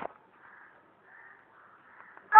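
Near silence after a short click at the start, with two faint brief sounds about half a second and a second and a quarter in.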